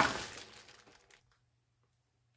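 Plastic bag of small paint pots crinkling and rustling as it is lifted away, with a sharp knock at the start; the rustle dies away about a second in.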